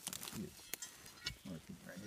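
A man's voice making two short, low hesitation sounds, like drawn-out "uh"s, mid-sentence, with a few faint clicks between them.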